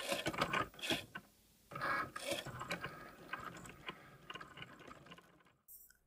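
Cricut Maker's motors running in short, irregular runs as the carriage drives the engraving tip over an aluminum bracelet blank. There is a brief pause about a second in, and the sound fades and stops near the end.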